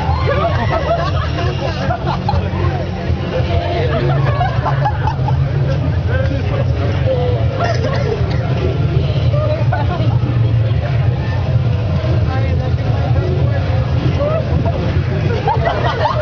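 Several people's voices talking over one another above a steady low rumble.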